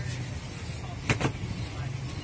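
Paper wrapping and ribbon on a bouquet crinkling briefly about a second in, over a steady low mechanical hum.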